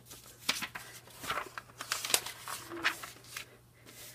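Glossy magazine pages being turned and smoothed flat by hand: a run of soft, irregular paper rustles and swishes.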